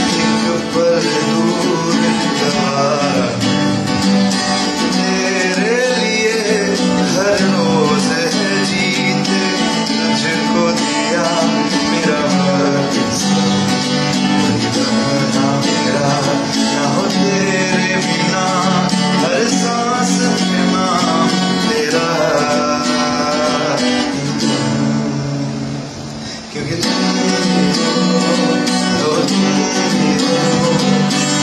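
A man singing to his own strummed guitar. The music dips briefly about 25 seconds in, then carries on.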